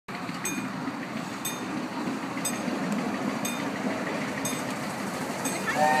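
A train running, a steady low rumble, with a short high ding repeating about once a second.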